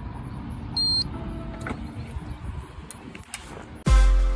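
A wall-mounted 125 kHz proximity card reader gives one short, high beep about a second in as it reads the card code emulated by a Flipper Zero, over a steady low background rumble. Electronic music starts at the very end.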